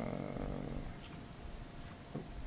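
A man's drawn-out hesitation "uh" trailing off in the first moment, then quiet room tone with a faint low hum.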